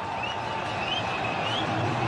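Cricket stadium crowd cheering after a boundary, a steady roar with a few short rising whistles over it, about two a second.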